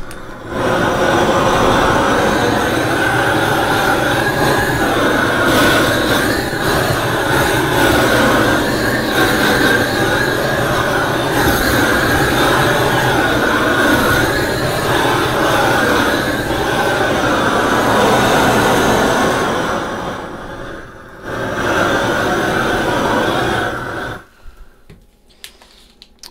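Handheld propane searing torch running: a loud, steady roar of the flame as it sears barbecue-sauced pork. It dips briefly about 20 seconds in and is shut off about two seconds before the end.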